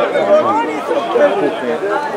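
Many voices of a crowd of spectators and handlers talking and calling over one another.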